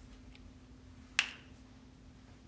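A single sharp click about a second in, the snap of a cap being pressed onto a dry-erase marker, over a faint steady room hum.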